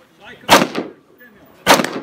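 Two rifle shots from an AR-15-pattern rifle, about a second apart, each a sharp crack with a short echo.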